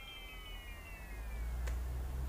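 Faint high tone with several layered pitches, gliding slowly downward and fading out, from the anime's soundtrack, followed by a single soft click about three-quarters of the way through over a low hum.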